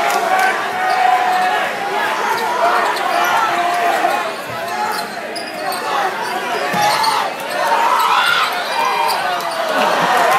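A basketball bouncing on a hardwood gym floor as it is dribbled, under a packed crowd of spectators talking and shouting in a large, echoing hall.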